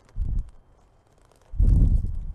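Two dull low thumps: a short one about a quarter second in, then a longer, louder one near the end.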